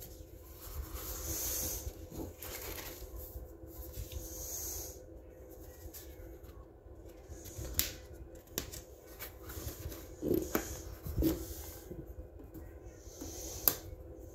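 Paper rustling and handling as coloring book pages are turned, with soft rustles and a few light clicks and knocks.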